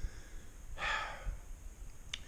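A man's single short breath about a second in, over a faint low rumble.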